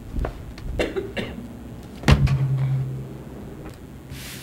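Knocks and bumps from people moving at the board table, picked up by the table microphones. Three light knocks are followed about halfway by a louder thump and a low hum that lasts about a second.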